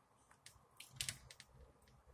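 Close-miked eating sounds: soft wet mouth clicks and smacks of chewing stewed lamb birria, with a cluster of sharper clicks about a second in.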